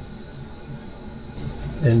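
Steady low background rumble and hiss with no distinct events, then a man's voice starting near the end.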